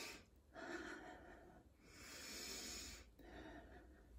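A woman breathing slowly and deeply in and out, faint. Each breath lasts about a second.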